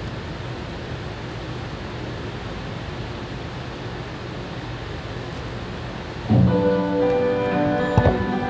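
A steady hiss of room noise, then about six seconds in music begins suddenly with sustained chords: the instrumental introduction to the closing hymn.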